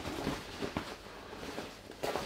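Fabric rustling and brushing as hands push a tote bag's lining down inside the bag, with a few light taps.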